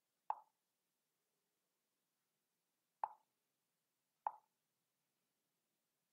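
Three short computer mouse-button clicks against near silence: one just after the start, then two more about three and four seconds in.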